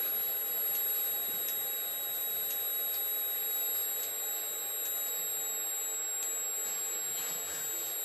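A steady electrical hum with a constant high-pitched whine, and a few faint clicks from keys on the teach pendant being pressed.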